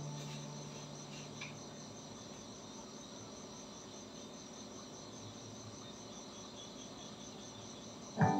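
Faint, steady high-pitched trilling of crickets over a low hiss. The tail of a background music note dies away in the first second and a half.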